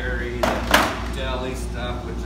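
Plastic milk crates set down onto a wooden pallet: a brief hollow clatter about half a second in, with a sharp peak just after.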